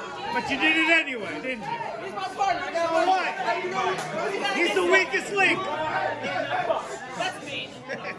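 Overlapping chatter of many voices talking and calling out at once: the small audience and people around a wrestling ring, with no single voice standing out.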